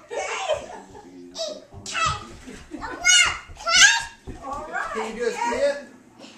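A young child's high-pitched squeals and laughter, loudest in three bursts about two, three and four seconds in, with a lower adult voice near the end.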